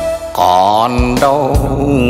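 Live Vietnamese ballad band music: a bamboo flute plays a melody of wavering, sliding notes over bass guitar and hand percussion.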